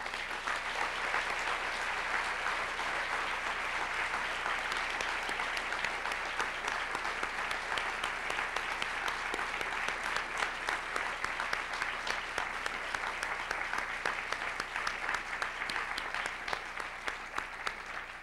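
Audience applauding. It starts suddenly, holds steady, and thins out near the end, when single claps stand out.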